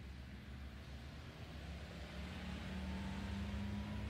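A car approaching along the street, its engine and tyre noise growing steadily louder as it draws near.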